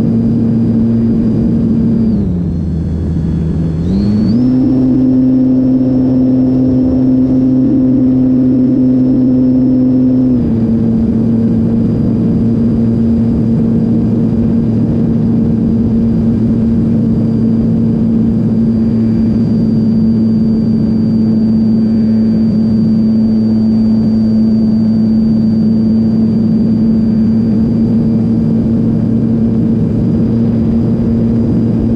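Model aeroplane's motor and propeller running in flight, heard close behind the propeller with air rushing past. The pitch drops on throttle-back about two seconds in, climbs higher on added throttle a couple of seconds later, and settles back to a steady drone about ten seconds in.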